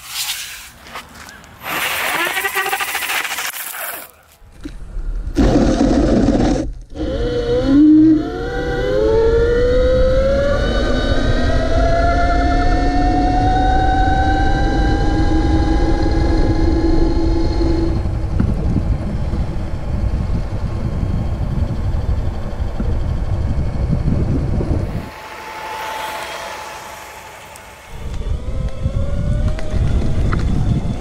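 Brushed electric motor of a belt-driven electric scooter whining as the scooter speeds up, its pitch rising and then holding steady at speed, over heavy wind and tyre rumble.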